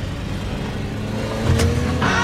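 SUV engine running with a steady low rumble and faint music underneath. A sharp knock comes about one and a half seconds in.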